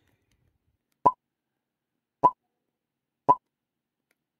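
Three short, equal clicks about a second apart: the sound effects of a subscribe-button animation, with the like button, subscribe button and notification bell pressed in turn.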